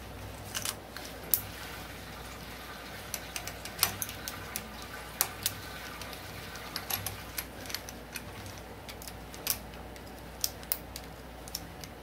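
Metal clicks and clinks from a four-jaw lathe chuck being handled and its jaws adjusted with a hex key: sharp, irregular taps scattered throughout, over a low steady hum.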